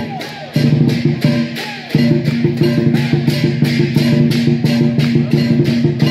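Rhythmic music with a fast, steady beat.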